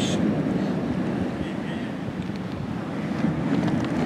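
Steady wind noise on the microphone, with the wash of ocean surf.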